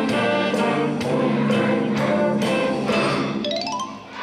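A wind band plays a tune with a steady beat of about two strokes a second. Near the end a quick rising run leads to a brief break in the music.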